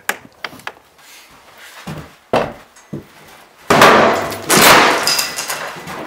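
Forcible-entry demonstration: a sharp strike about two seconds in, then a loud crash of about two seconds as a door is forced through its wooden jamb, from a Halligan bar driven into the jamb and the wood splitting.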